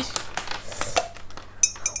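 A string of light clicks and clinks from small hard objects being handled, with a brief rapid rattle near the end.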